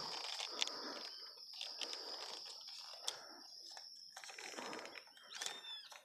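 Faint, steady high trill of crickets, with a brief bird call about five seconds in.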